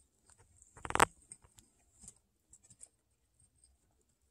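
A guinea pig gives one short, pitched call about a second in, the loudest sound here. Scattered faint clicks and crunches of guinea pigs eating dry pellet food run around it.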